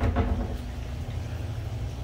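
Steady low hum of reef aquarium sump equipment running: pumps and the protein skimmer.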